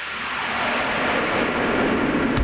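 A rushing whoosh sound effect that grows steadily louder and spreads lower in pitch as it swells.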